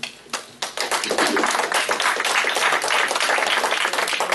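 Audience applauding: a few scattered claps at first, then full, dense applause from about a second in.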